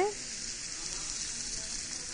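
Thick chateaubriand steaks (centre-cut beef tenderloin) searing in a very hot pan, a steady sizzle.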